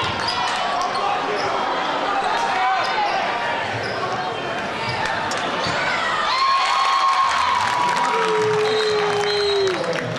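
Basketball game sound in a gymnasium: a basketball dribbling on the hardwood floor under steady crowd chatter and shouts echoing in the hall. In the second half, a couple of long drawn-out shouts ring out above the crowd.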